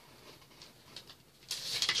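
A plastic CD jewel case being handled and opened: faint clicks at first, then a louder clatter and rustle near the end.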